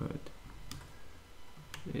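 Two sharp clicks of a computer mouse, about a second apart, as settings are adjusted in a drawing program.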